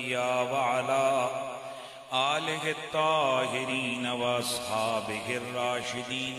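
A man chanting the Arabic opening praise of a sermon in long, drawn-out notes with gliding ornaments, pausing briefly about two seconds in.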